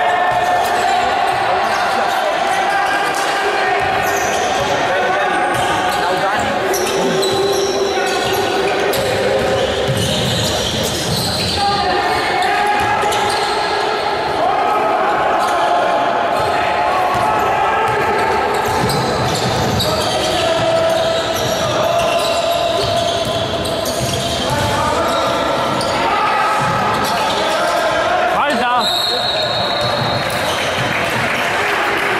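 Basketball game sound in a large indoor hall: a ball bouncing on the court, with players' and coaches' voices echoing, and the loudness staying even throughout.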